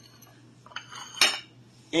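Ceramic plates knocking and clinking against a granite countertop as they are handled, a few light clicks followed by one sharper knock just over a second in.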